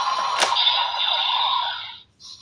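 Electronic transformation sound effects playing from the speaker of a DX Gotcha Igniter toy, with one sharp click about half a second in. The sound fades out near the end.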